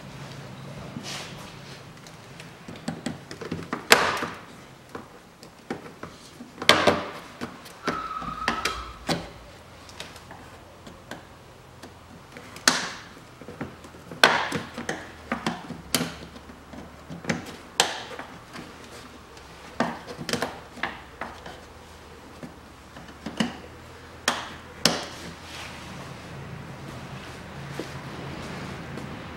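Irregular sharp clicks and knocks of hard plastic: the retaining clips of a car's windscreen cowl panel being pried out and handled, many separate snaps spread throughout.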